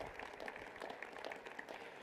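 Faint applause from a small seated audience in an auditorium, a scatter of individual hand claps that thins out toward the end.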